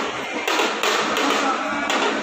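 A few irregular taps and knocks, about four in two seconds, over a continuous background din.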